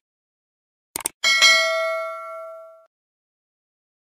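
Subscribe-button sound effect: two quick mouse clicks about a second in, then a bright notification-bell ding that rings out and fades over about a second and a half.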